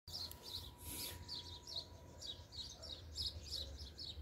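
A bird chirping: faint, short repeated chirps, about two or three a second.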